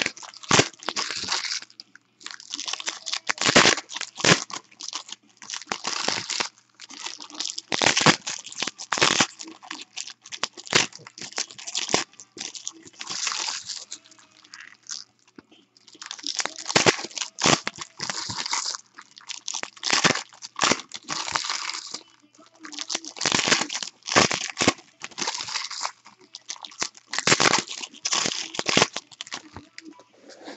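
Foil wrappers of baseball card packs crinkling and tearing as the packs are ripped open and handled, in irregular bursts with short pauses between them.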